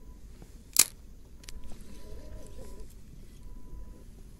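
One sharp click about a second in, over a low steady rumble.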